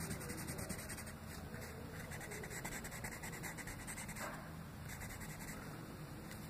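Pencil shading on paper: quick back-and-forth scratching strokes, coming in spurts with short pauses between.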